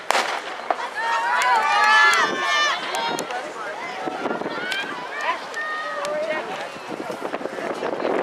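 A starter's pistol shot, one sharp crack right at the start, the signal that sets off an 800 m race. Spectators then shout and cheer loudly for a couple of seconds before the voices die down.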